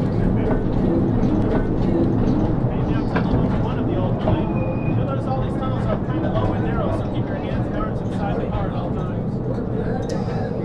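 Mine-ride train cars rolling along their track with a steady low rumble, with faint talk from riders over it.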